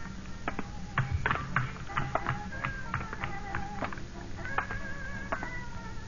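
Music played on a plucked string instrument: a run of single picked notes, a few held with a slight waver, over a steady low hum.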